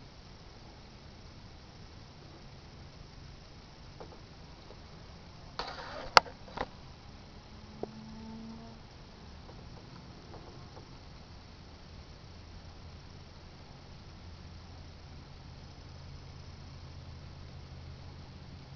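Quiet room tone with a few sharp clicks about six seconds in, the loudest a single click, and another click a little later. A faint low hum comes in during the second half.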